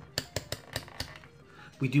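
Plastic rotary selector switch of a Martindale MM34 multimeter being turned, giving a quick run of detent clicks in the first second. No beep comes with the range changes: this meter is silent when switched.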